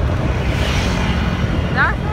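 Steady wind and running noise of a moving motor scooter, heavy in the low end, with a short rising glide near the end.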